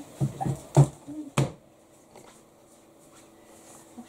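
Four short knocks and clicks in quick succession during the first second and a half, then a quiet kitchen with a faint steady hum.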